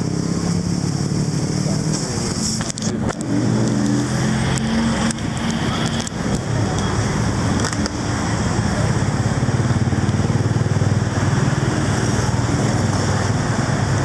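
Street traffic: car and motorbike engines running close by in a steady low hum, with an engine note rising briefly about three seconds in and a few sharp knocks around the same time.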